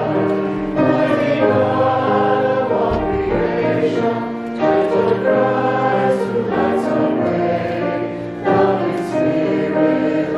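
A group of voices singing a hymn together, accompanied by piano, with a brief break before each new line about every four seconds.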